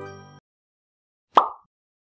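The last note of a chiming intro jingle fades out, then comes a pause. About a second and a half in, a single short pop sound effect plays, the kind used for an on-screen subscribe button popping up.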